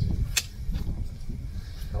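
Gloved hands working loose soil around the base of a young fir sapling, over a low rumble, with one sharp click about half a second in and a few fainter ticks after it.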